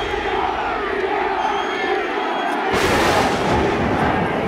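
Football stadium crowd, many voices shouting and cheering at once, with a louder rush of noise nearly three seconds in.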